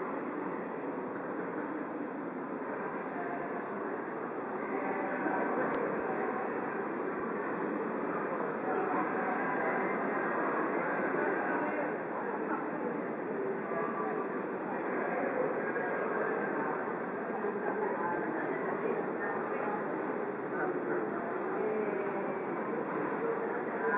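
Crowd ambience at a busy pedestrian crossing: many voices mixing into a steady murmur over a continuous city rumble.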